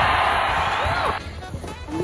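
Plastic sled sliding over snow, a loud steady hiss that stops suddenly about a second in as the sled comes to rest.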